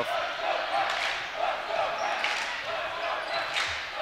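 Basketball being dribbled on a hardwood gym floor over the steady chatter of a crowd in the stands.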